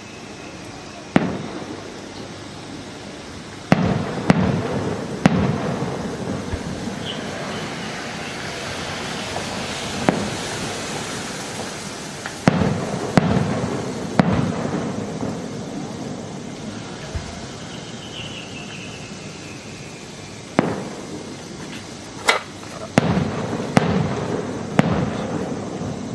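Daytime fireworks shells bursting overhead: about a dozen sharp reports in three clusters, near the start, in the middle and near the end. Each report is followed by a rolling echo.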